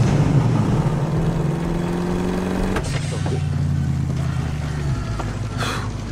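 1969 Ford Mustang's V8 engine running steadily at cruising speed. The engine note drops about halfway through.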